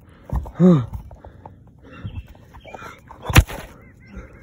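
A person's short, breathy sigh about half a second in, then faint breathing and rustle, and a single sharp knock near the end, the loudest sound.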